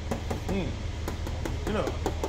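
A hand tapping on the sheet-metal body panel of a Toyota Kijang Grand Extra: a quick run of light knocks, about four or five a second.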